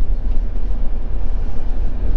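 Steady low rumble of engine and road noise inside a moving motorhome's cab.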